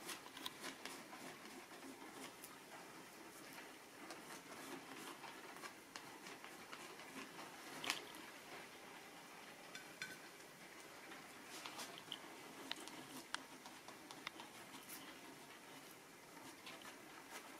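Faint, irregular dabbing and scraping of a cut piece of plastic credit card pressing acrylic paint onto paper, with scattered light clicks and one sharper tap about eight seconds in.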